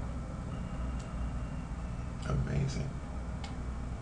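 A steady low hum with two faint clicks, one about a second in and one near the end, and a brief murmur of a man's voice in between.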